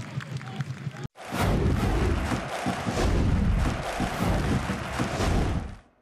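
Stadium crowd noise under the match play, then after a sudden break a loud closing sting of crowd roar and music with heavy low beats, which fades out near the end.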